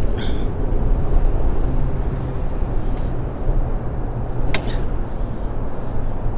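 Steady low rumble of road traffic crossing the bridge overhead. A single short click comes about four and a half seconds in.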